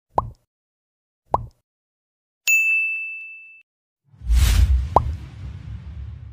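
Subscribe-button animation sound effects: two short clicking pops about a second apart, then a bell ding that rings for about a second. Near the end comes a whoosh with a pop in it.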